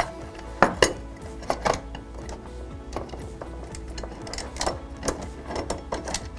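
Metal faceplate of a wall-mounted door actuator clicking and knocking against its housing as it is lifted off, a handful of sharp light knocks, the loudest about a second in.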